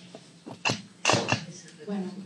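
A person coughing or clearing the throat: one short cough, then a quick cluster of two or three more about a second in, close to the microphone. A woman's voice begins reading near the end.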